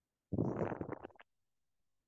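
A person's audible breath, about a second long, sharp at the start and trailing off unevenly, taken during a guided breathing rest.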